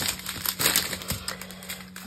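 A strip of small sealed plastic bags of diamond painting drills being handled and unfolded: irregular plastic crinkling with quick clicks as the bags and the tiny resin drills inside them shift.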